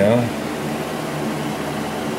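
Space heaters running steadily in a small room, a constant rushing noise with a faint low hum; a propane heater is among them, running on high.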